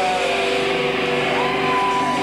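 Live rockabilly band playing loudly: a chord is held and rings steadily, with one note sliding up to a higher held pitch about a second and a half in.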